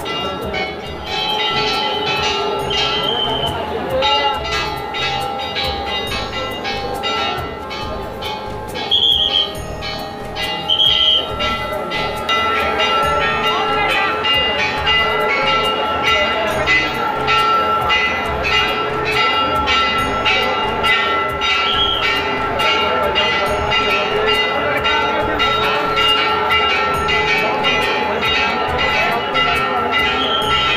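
Metal temple bells being rung over and over by devotees, a rapid, continual clanging over a sustained ringing tone.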